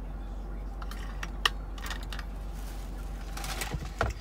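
Water bottle being handled after a drink: a few light clicks about a second in, one sharp click about one and a half seconds in, then soft rustles, over a steady low hum.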